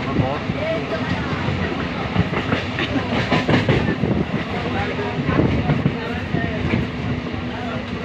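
Running noise of a moving train heard from inside the carriage: a steady rumble with many short knocks and rattles from the wheels and coach.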